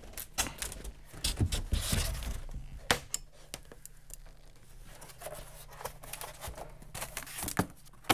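Rigid polystyrene foam insulation board being handled and a caulking gun laying foam board adhesive: scattered scrapes, creaks and clicks, with one sharp click about three seconds in.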